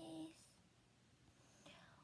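Near silence after a young woman's drawn-out greeting trails off early on, with a faint whispered syllable near the end.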